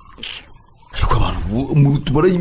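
After a fairly quiet first second, a loud, rough roaring cry starts and carries on into wavering, voice-like sounds.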